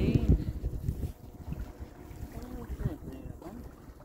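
Wind buffeting the phone's microphone, loud for about the first second and then dropping to a lower rumble, with faint voices in the background.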